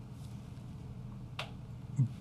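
Pause in speech over a steady low hum of room tone through the microphone, with a single short click about one and a half seconds in and another brief click at the end.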